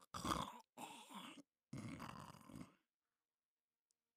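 A person snoring: three snores in quick succession, stopping about three seconds in.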